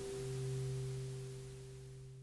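The last guitar chord of a song ringing out, a low steady note sustaining and slowly fading away over a faint hiss.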